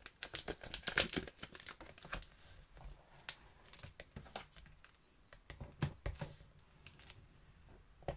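A laminated card cover being folded along a scored line and pressed flat by hand on a plastic scoring board: a run of crackly clicks and rustles from the stiff laminate, dense for the first two seconds, then sparser.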